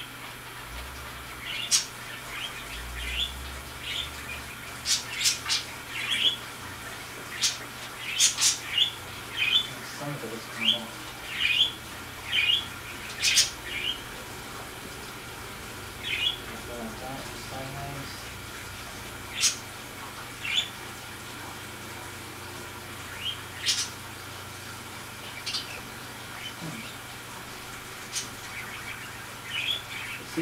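Algae scraper squeaking and scraping against aquarium glass in short, irregular strokes, with quieter pauses between them.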